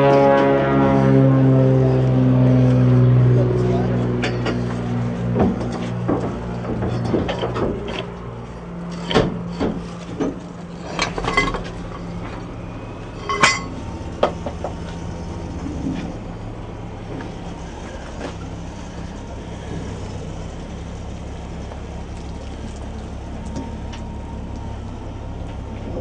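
Boatyard machinery running with a steady low hum. Over the first few seconds a pitched mechanical tone slides down in pitch. Between about four and fifteen seconds in comes a run of sharp metal clanks and knocks, the loudest near the middle, from work around a boat hull on stands.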